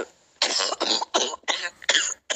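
A woman coughing in a quick run of about five coughs, recorded as a phone voice message; she is ill.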